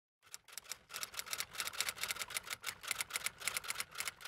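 Typewriter-style typing sound effect: a fast, even run of sharp key clicks, about ten a second, starting just after the opening.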